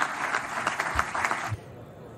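Audience applauding with many hands clapping together. The applause cuts off suddenly about one and a half seconds in, leaving a quieter, even background.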